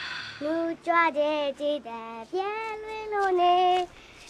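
A high-pitched voice singing unaccompanied, a few short notes followed by one long held note.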